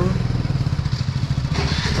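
Small two-wheeler engine idling steadily with a fast, even low pulse, and a hiss joining it about one and a half seconds in.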